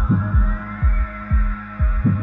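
Electronic dance track at 123 BPM: a steady four-on-the-floor kick drum about twice a second under a held bass note, with a synth tone gliding up in pitch to about halfway through and then slowly back down.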